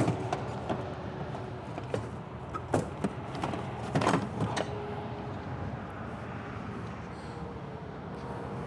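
Steady background hum with a few short clicks and knocks as the EV fast charger's connector and cable are handled in their holster.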